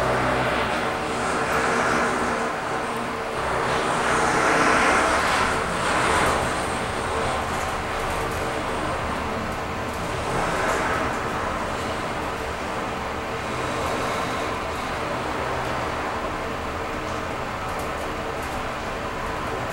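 Mitsubishi NexWay high-speed traction elevator travelling down the shaft, heard inside the car: a steady hum with rushing air noise. The rushing swells and fades a few times in the first six seconds and again about ten seconds in.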